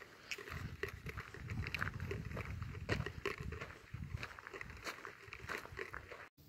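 Footsteps crunching on a gravel trail at a walking pace, about two steps a second, over a low rumble of a hand-held phone's microphone being jostled.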